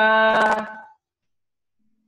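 A man's voice drawing out one long, steady vowel for about a second, then cutting to silence.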